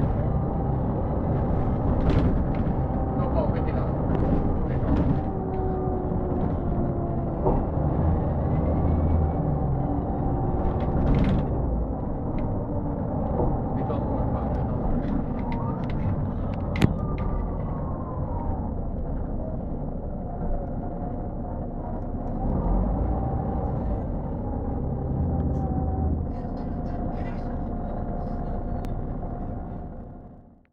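Cabin sound of a Mercedes-Benz O405N2 city bus under way: its OM447hLA six-cylinder diesel engine runs with a steady rumble, a faint whine gliding up and down with road speed, and short rattles now and then.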